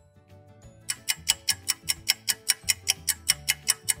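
Fast clock-ticking sound effect, about six sharp ticks a second, starting about a second in, over a soft music bed, marking a time skip.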